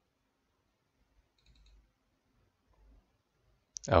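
Near-silent room tone with a few faint computer-mouse clicks about one and a half seconds in; a man begins speaking right at the end.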